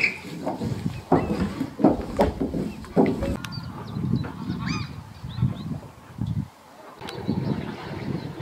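Birds calling repeatedly in short, irregular calls, with a few higher curling notes about halfway through, over uneven outdoor background noise.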